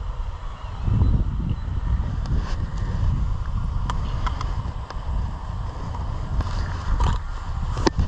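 Wind buffeting an outdoor camera microphone: a steady low rumble, with a few faint clicks from handling gear.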